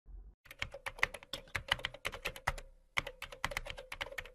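Computer keyboard typing sound effect: quick, irregular key clicks starting about half a second in, with a short pause about two and a half seconds in.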